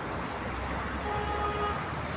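Steady road traffic noise, with a car horn sounding once for just under a second about halfway through.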